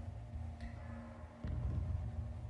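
Quiet pause in a TV studio: faint steady low hum of room tone, a little louder from about one and a half seconds in.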